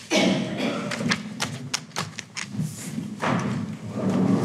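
A run of sharp knocks and taps, about eight in quick succession, with rustling: people settling at a meeting table, setting things down and moving chairs near a table microphone.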